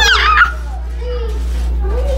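Girls laughing and squealing: a loud, high-pitched shriek of laughter in the first half second, then quieter giggly voices.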